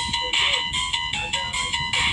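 A simple electronic tune of short, bright beeping notes, like a ringtone or game jingle.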